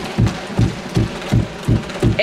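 Members of parliament thumping their wooden desks in applause, a steady rhythmic beat of low thumps about two to three a second.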